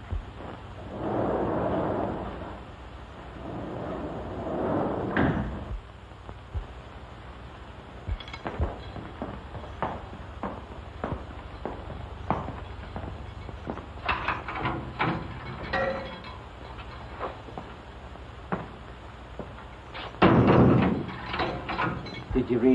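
Steel cell doors clanking and sliding, with a guard's footsteps knocking on a hard floor as he walks the corridor. A louder burst of door noise comes near the end.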